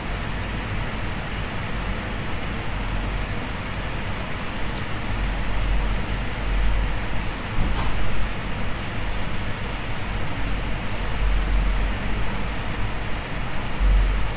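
Steady background hiss with a low rumble underneath and one faint tick about eight seconds in; no speech.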